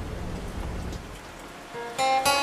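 Steady recorded rain ambience that fades down in the second half. A single plucked guitar note comes in just before the end.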